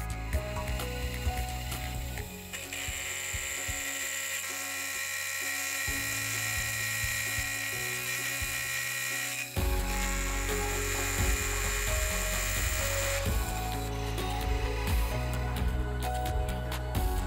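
An end mill on a milling machine cutting the edge of a stacked pair of tool steel blanks, with a steady high-pitched cutting whine from a couple of seconds in until about halfway through. Light clicks of the workpiece being handled in the vise come before the cut, and soft background music plays throughout.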